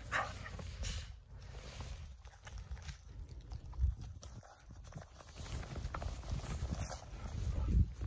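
A dog playing in snow: a short growl right at the start, then scattered soft steps and scuffles in the snow over a low rumble.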